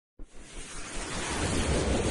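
Logo-intro sound effect: a rumbling, hissing noise swell that starts abruptly just after the beginning and builds steadily louder.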